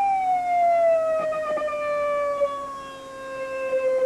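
Electronic test tone run through a phase shifter, gliding down in pitch for about three seconds and then holding steady as it is tuned back to its original frequency. Its volume dips and comes back near the end, as the phase shifter puts that frequency out of phase.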